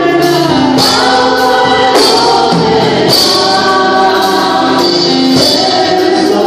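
Gospel worship music: sustained, slowly moving singing with a sharp percussion hit about once a second.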